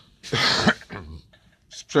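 A man coughs once, a short rough burst about a third of a second in.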